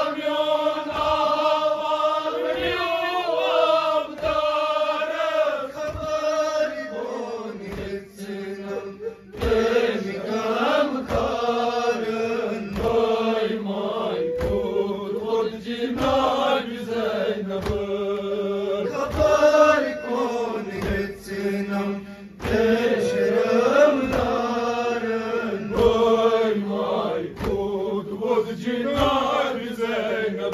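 Men chanting a nauha, a Shia lament, led by a reciter on a microphone with the seated group chanting along. Under the chant, rhythmic chest-beating (matam) thumps land roughly once a second.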